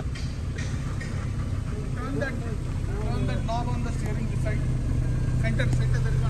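A 1949 Austin A40's 1.2-litre four-cylinder engine running steadily, heard from inside the cabin as a low hum that grows slightly louder. Faint voices can be heard alongside it.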